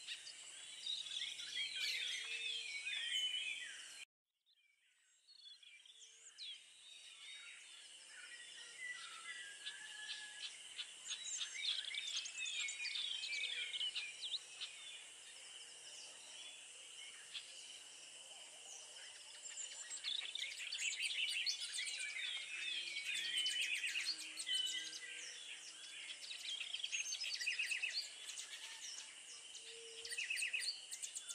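Birdsong from several birds: bursts of quick chirps and trills over a steady high-pitched background hum. The sound drops out completely for about a second, around four seconds in.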